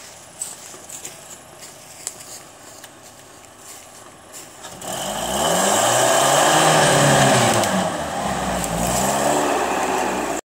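Lifted Toyota pickup's engine, quiet at first with a few small knocks, then about halfway through revving hard, its pitch rising and sagging under load as the truck charges up a steep loose slope with the clutch dumped in second. A loud rushing noise over the engine comes from the big tyres spinning and throwing dirt and leaves.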